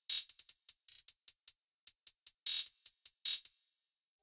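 Programmed trap hi-hat pattern played solo from a drum plugin: crisp electronic hi-hat ticks at an uneven spacing with quick rolls and a short reverb tail on some hits. It stops about three and a half seconds in.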